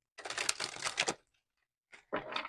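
A tarot deck being shuffled by hand: a quick, dense run of card-on-card flicks lasting about a second, with a second run starting near the end.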